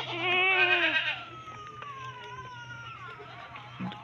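A goat bleating: a loud, quavering call about a second long, then a fainter, drawn-out call that slides down in pitch.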